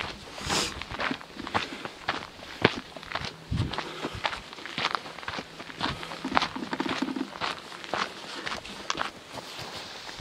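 A hiker's footsteps on a dirt trail, a steady walking pace of about two steps a second.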